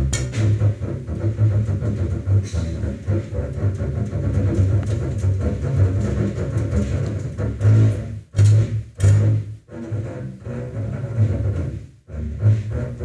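Live jazz group with the double bass playing low notes over sparse drum-kit hits and cymbal strokes. A few strong bass notes with short breaks between them come near the end.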